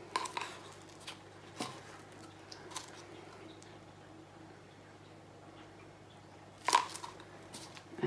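Scattered light clicks and taps of small art supplies being handled and set down on a work table, with one sharp knock about seven seconds in, the loudest sound.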